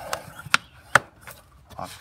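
Sharp plastic clicks and knocks from a 2010 Toyota Corolla's air filter housing as the cover is pushed down and its spring clips are worked back into their tabs, with two louder clicks about half a second apart near the middle.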